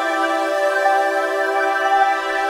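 Relaxing new-age healing music: a steady wash of held, sustained tones in a chord, with no bass and no beat.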